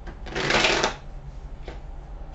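A deck of tarot cards shuffled by hand: a quick flutter of cards lasting about half a second, followed by a light tap of the cards a little later.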